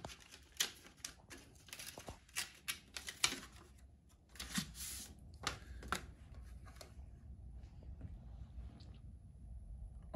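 Paper rustling and crinkling as a greeting card and its envelope are handled, a quick run of sharp crackles over the first six seconds that thins to faint handling noise near the end.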